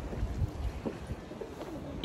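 Faint short bird calls over a low, uneven rumble.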